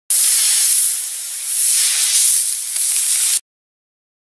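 Small rocket motor burning, a loud steady hiss that cuts off suddenly after about three and a half seconds.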